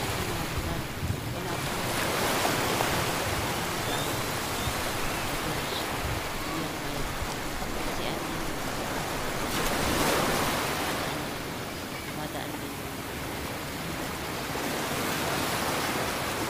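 Wind rushing over the microphone, a steady noise that swells about two seconds in and again near ten seconds.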